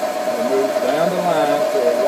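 Haas CNC milling machine running its program: a steady, high machine whine as the tool feeds along the part outline.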